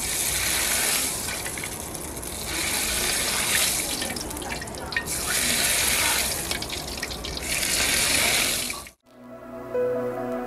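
Hot oil ladled over skewered raw meat in a pan, sizzling in about four swelling waves as ladlefuls hit. The sizzle cuts off suddenly about nine seconds in, and music follows.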